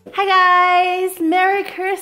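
A woman singing a short sung phrase: one long held note, then two shorter ones.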